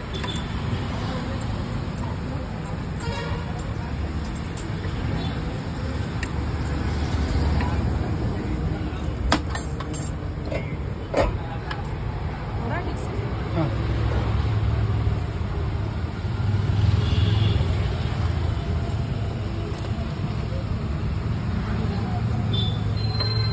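Roadside food-stall ambience: a steady low rumble of traffic with indistinct background voices. About nine and eleven seconds in there are two sharp clinks of steel utensils.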